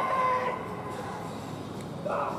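Baseball players shouting long, drawn-out calls across the field during fielding practice; one held call trails off about half a second in, leaving a lower field background.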